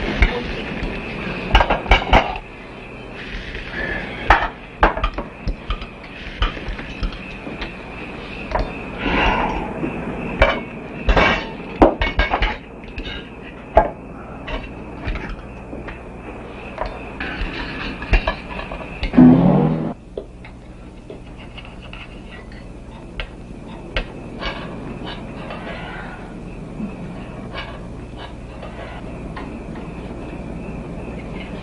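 Knives and forks clinking and scraping on dinner plates during a meal. There are many short clinks in the first two-thirds and fewer after. One louder grating scrape comes about two-thirds of the way through.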